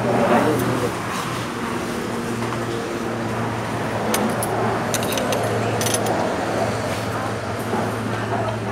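Restaurant serving-counter ambience: people talking in the background over a steady low hum, with a few light metallic clinks about four to six seconds in.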